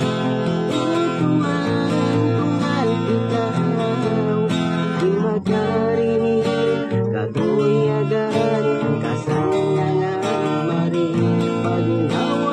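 Acoustic guitar strummed in a steady rhythm of chords, the chords changing as it plays.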